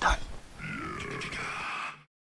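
A man's wordless grunting. A short grunt comes at the very start, and a longer one begins about half a second in and cuts off abruptly at the end.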